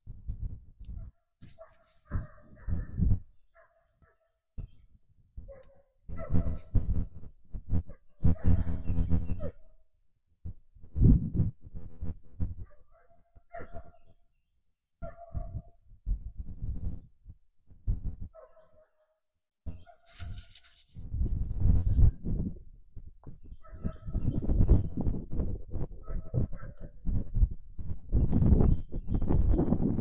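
Wind gusting against the microphone in uneven bursts, with a few short animal calls in between.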